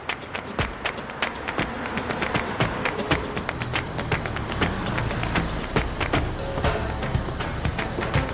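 Background music score with a quick ticking percussive beat and low bass notes that come in shortly after the start and build.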